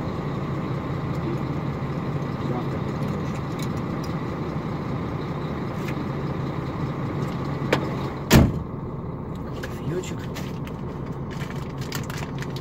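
KAMAZ truck's diesel engine idling steadily, heard from inside the cab, left running to build up air pressure. Two sharp knocks come about eight seconds in, the second the louder.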